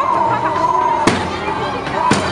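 Street parade noise: music and voices over a steady din, with a single sharp bang about a second in.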